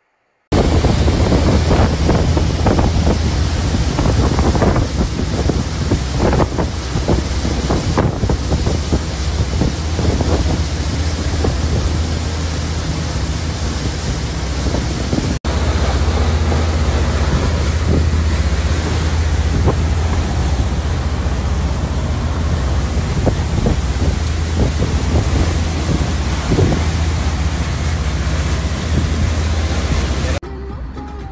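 Motorboat under way at speed: a steady low engine drone under heavy wind buffeting on the microphone and rushing water. The sound drops out for an instant about halfway through.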